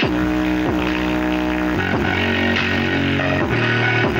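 Music with bass and guitar-like notes played loud through a bare 5-inch woofer driven at maximum power, its cone at full excursion. The notes change every half second to a second.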